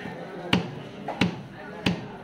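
A broad cleaver chops a carp fillet into slices on a wooden chopping block: three sharp chops, about two-thirds of a second apart.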